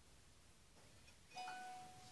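Near silence, then about a second and a half in a short electronic chime sounds: a brief higher note over one steady held tone that fades out.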